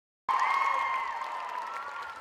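Audience applauding and cheering, with a long high-pitched whoop held over the clapping. It starts suddenly a quarter second in and fades off.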